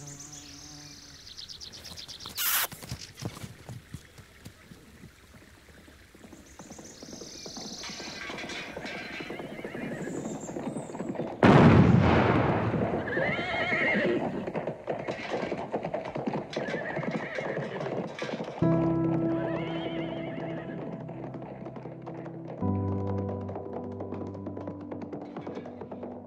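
Horse neighing over hoofbeats, with a sudden loud bang about twelve seconds in. From about nineteen seconds on, slow music of held chords that change every four seconds or so.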